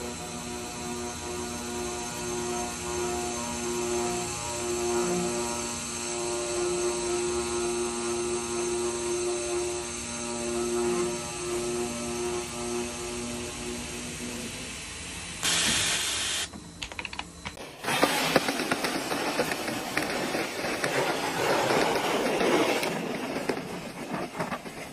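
Circular cold saw cutting through a solid round steel bar: a steady pitched machine hum for about fifteen seconds that then stops. After a brief burst of noise, a snow shovel scrapes through snow with a rough, crunching noise for several seconds.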